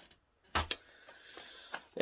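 A plastic Blu-ray case being handled and set down: two sharp clacks about half a second in, then faint rustling and a small click near the end.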